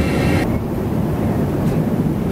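Steady low rumble of cabin noise inside an airliner. A brighter hiss cuts off abruptly about half a second in, leaving the low rumble.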